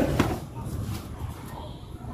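Vegetables being handled on a concrete floor, with a couple of sharp knocks in the first quarter second, then quieter handling noise under faint background voices.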